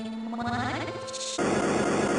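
Garbled, distorted edited audio with a steady drone and wavering tones, cutting abruptly about a second and a half in to a louder burst of harsh, dense noise.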